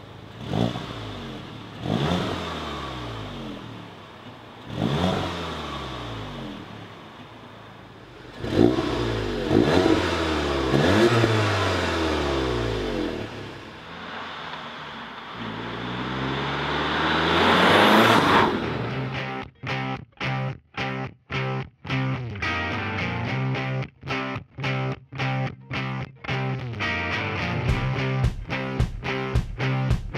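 A VW Golf GTI Clubsport's turbocharged four-cylinder engine revving in several bursts, its pitch swelling and falling. It builds to a long loud run that ends with the car rushing past at about 18 seconds. After that, rock music with a chopped guitar rhythm takes over for the rest.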